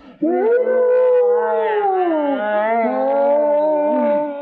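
Two people screaming in long, wavering screams that overlap, rising and falling in pitch: the screams of people scalded in a boiling hot spring.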